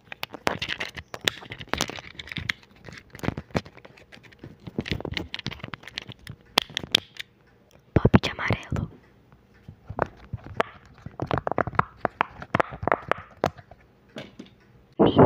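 Fidget toys, among them a silicone pop-it, worked close to a microphone: a quick, uneven run of clicks, taps and pops, with a louder cluster about 8 seconds in.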